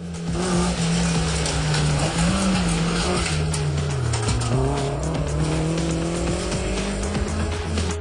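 A Maruti Gypsy rally car's engine revving hard as it drives on sand, its pitch wavering, dipping about four seconds in and then climbing again, over a dense hiss of tyres and dust.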